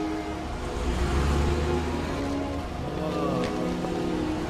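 Tense string-orchestra film score with slowly shifting held notes, over a low car-engine rumble as a late-1950s police car pulls away, louder in the first half and fading out.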